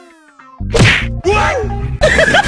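Dubbed comedy sound effects. A falling whistle-like tone fades out, then about half a second in a loud cartoon whack hits. Music with a steady low note and warbling, bending tones follows the whack.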